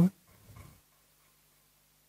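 Near silence in a pause between a man's sentences, with a brief faint low sound about half a second in.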